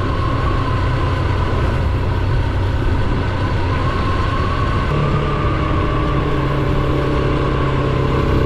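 Motorcycle engine running steadily while riding along a road. About five seconds in, its note changes to a clearer, steadier hum.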